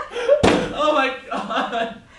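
A single loud bang of a fist pounding on a door, about half a second in, with a voice heard around it.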